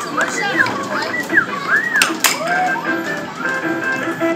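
Arcade din: electronic game-machine sounds and music over children's voices, with chirping, arching tones and a sharp knock about two seconds in.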